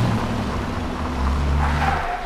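An old car's engine running steadily at low speed as it drives over cobblestones, with tyre rumble from the cobbled road.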